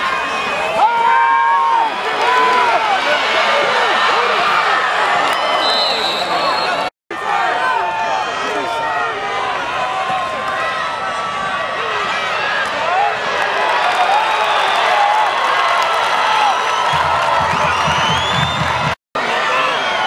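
Football stadium crowd cheering and shouting, many voices overlapping at once. The sound drops out abruptly twice, about seven seconds in and a second before the end.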